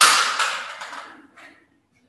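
Dry-erase marker scraping across a whiteboard in a few quick writing strokes; the longest lasts about a second and fades, and a short one follows.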